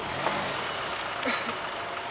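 Mitsubishi Pajero Pinin's engine running at low speed as the SUV creeps through tall grass over rough ground.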